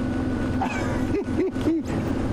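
Open safari vehicle's engine running as it is driven along a dirt track, a steady low rumble with a held engine note. Three short rising-and-falling tones follow in quick succession in the second half.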